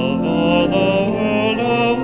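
Church music with singing: a hymn sung in long held notes with a wavering vibrato.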